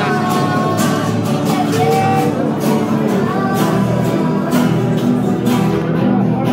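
Several acoustic guitars strummed in a steady rhythm, about two strokes a second, with voices singing a worship song along with them.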